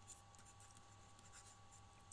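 Near silence: faint scratches and taps of a stylus writing on a drawing tablet, over a steady low electrical hum.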